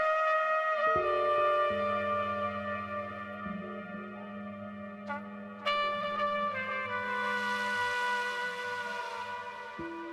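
Trumpet playing slow, long held notes. A sustained electric guitar drone of low notes enters about a second in.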